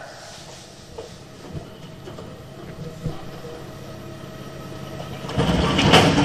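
Greyhound track's mechanical hare running along its rail: a low, steady rumble that grows suddenly loud about five seconds in as the lure sweeps past the starting traps and the traps open.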